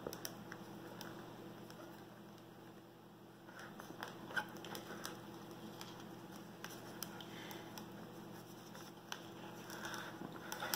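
Dried Elmer's glue film being peeled by hand off the grooves of an Edison Diamond Disc: faint, scattered crackles and ticks as the skin lifts away, over a low steady hum.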